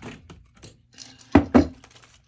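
A metal canister set down on a desk: two loud, deep thunks about a second and a half in. Light clicks and rustling from a leather wallet being handled come before them.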